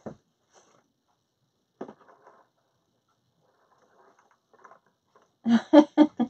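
Mostly quiet room with a few faint, short handling noises, one just under two seconds in and a few more around four to five seconds. A woman starts speaking near the end.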